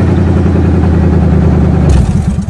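Buick Roadmaster's fuel-injected Chevy 350 (5.7 L) V8 running steadily, heard from inside the cabin. Right at the end it is switched off and the engine starts to wind down.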